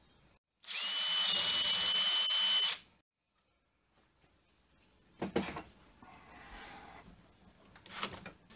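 Power drill running for about two seconds with a steady high whine, starting and stopping sharply, as it bores a 6 mm hole into a mini lathe's metal tailstock for an oiler port. A few light knocks follow later.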